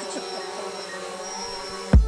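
Quadcopter drone hovering low, the steady buzz of its propellers.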